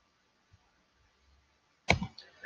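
Near silence, then a single sharp click near the end.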